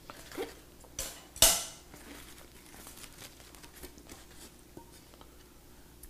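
Thin aluminium plates from a 3D-printer kit clink and clatter as they are handled and set down, with the loudest knock about a second and a half in. After it comes light rustling and small clicks of packing as parts are lifted out.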